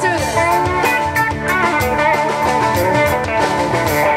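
Live rock band playing an instrumental passage: electric guitar lead with sliding, bending notes over drum kit and rhythm guitars.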